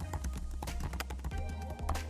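Rapid typing on a computer keyboard, quick clicking keystrokes at about eight a second, over a steady low hum.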